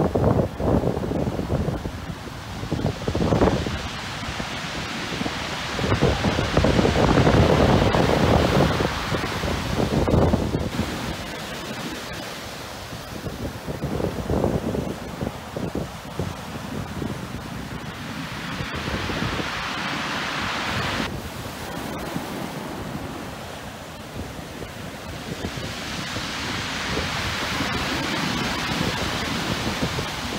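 Heavy beach-break surf crashing and whitewater washing up the shore, with gusty wind buffeting the microphone. The sound surges loudest about a third of the way in.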